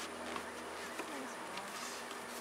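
Many honeybees buzzing around an opened hive: a steady hum, with single bees passing close by, their pitch sliding up and down, and a couple of faint clicks.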